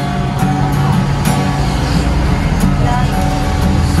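Acoustic guitar being strummed in an instrumental passage of a serenade, with a steady low rumble underneath.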